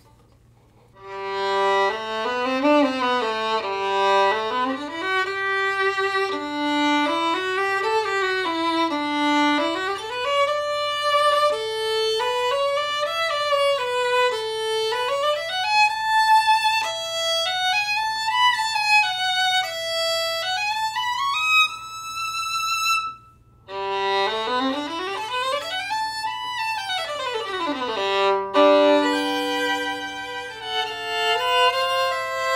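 Fiddlerman Symphony violin with Thomastik PI strings, played solo with a carbon-fibre bow. A slow melody climbs gradually higher, breaks off briefly about two-thirds of the way through, then resumes with a quick scale run up and back down.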